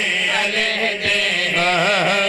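Several men singing a chanted refrain together into microphones, with long drawn-out notes.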